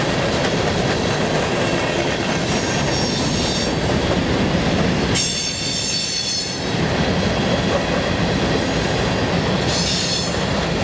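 Coal train's open hopper cars rolling past with a continuous rumble and clatter of wheels over rail joints. High-pitched wheel squeals come in about two and a half seconds in, louder from about five to seven seconds, and again just at the end.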